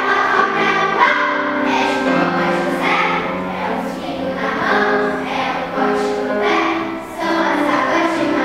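Children's choir singing together with piano accompaniment.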